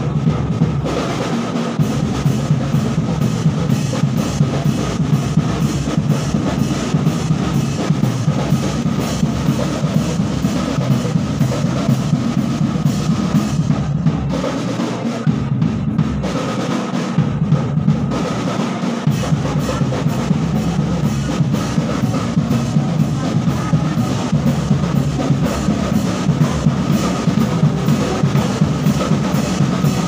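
Betawi ondel-ondel procession music: drums and percussion playing a steady, fast, unbroken beat.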